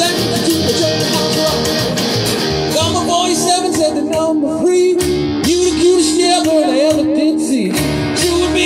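A live rockabilly band playing an instrumental break: an electric guitar lead line with bent notes over upright bass and strummed acoustic guitar, with a steady rhythm of sharp clicks.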